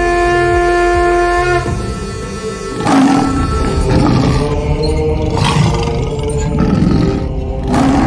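Horror film score holding a steady note, then, about three seconds in, a vampire roaring and snarling four times over the music.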